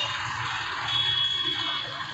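Outdoor background noise of a gathered crowd in a pause between speech, with a brief, thin, high-pitched steady tone about a second in.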